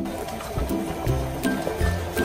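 Background music with a steady beat and repeating low bass notes.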